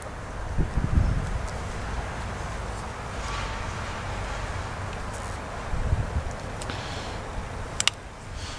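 Wind rumbling on the microphone, with a few handling bumps. Just before the end come a couple of quick sharp clicks as the Ontario RAT Model 1's liner-lock blade swings open and locks.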